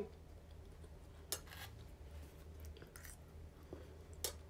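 Faint chewing of a mouthful of noodles, with a few soft clicks and ticks spread through it.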